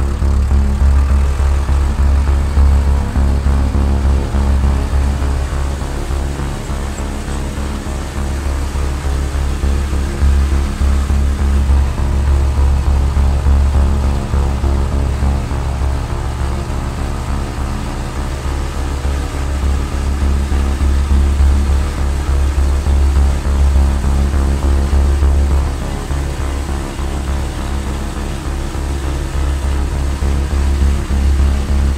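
David Brown tractor engine running steadily under way on the road, heard from the driver's seat: a deep, throbbing drone with a hum above it that swells and eases a little in loudness.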